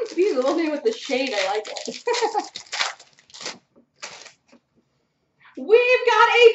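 A voice talking indistinctly for the first couple of seconds over the rustle and snap of trading cards being handled. A few separate card clicks follow, then a short pause before the voice starts again near the end.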